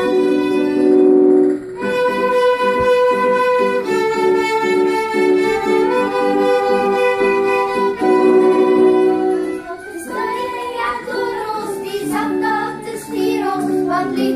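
A small children's ensemble of three violins with two flutes plays a simple tune in held notes that change about every two seconds. In the last few seconds the flutes drop out and voices sing along with the violins.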